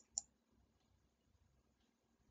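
A computer mouse double-clicking: two sharp clicks about a fifth of a second apart at the very start, then near silence.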